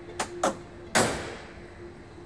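The driver's door of a 1967 Land Rover Series 2 being closed: two light clicks, then a single solid shut about a second in that rings out briefly. The door closes and latches properly, its hinges having been raised so it now hangs square.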